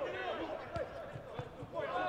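Players' voices calling across a football pitch, with a couple of short thuds of the ball being kicked.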